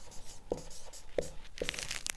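Marker pen writing on a whiteboard: a few short squeaky strokes as a word is written.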